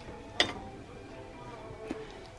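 Two sharp clicks, about a second and a half apart, as an antique metal wall sconce is picked up and handled, over faint background music.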